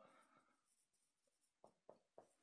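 Near silence: room tone, with two faint, short strokes of a pen or chalk on the lecture board near the end.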